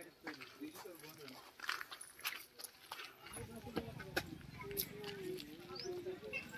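Faint distant voices of people talking, broken by scattered sharp clicks and knocks; about three seconds in, a low steady hum joins.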